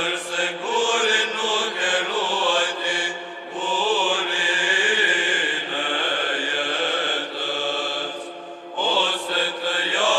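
Orthodox church chant: voices sing a slow, ornamented melody over a steady held drone note, with short breaks about three and a half and eight and a half seconds in.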